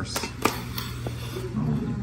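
A kitchen knife tapping sharply on a wooden cutting board a few times in the first second while slicing grape tomatoes, over a steady low hum.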